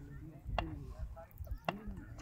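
Faint voices of cricket players calling out on the field, with two sharp clicks about a second apart.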